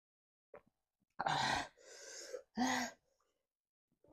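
A woman's loud, breathy vocal sounds: a sharp gasping burst about a second in, a fainter breath after it, and a second burst with some voice in it near the end.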